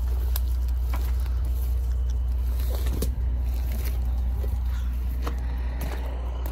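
A vehicle engine idling with a steady low rumble, with a few scattered footsteps crunching on gravel.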